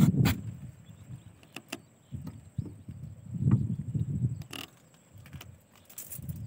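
Wire-mesh crab trap rattling and clinking as it is handled in a boat, with sharp metal clicks near the start and about four and a half seconds in, over irregular low rumbling handling bumps.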